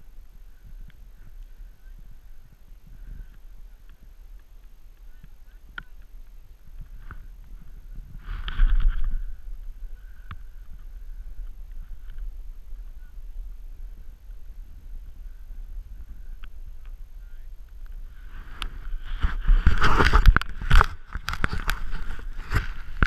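A steady low rumble of wind on the action camera's microphone, with one brief louder rush about a third of the way through. In the last few seconds come loud scraping and knocking as the camera is picked up and handled.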